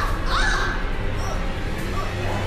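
A woman crying out twice in quick succession right at the start, the second cry rising then falling in pitch, as she is grabbed from behind.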